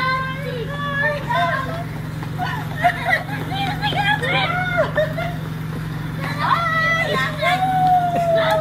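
Excited high-pitched voices of a young child and a woman calling out in short bursts, with a long falling cry near the end, over a steady low hum.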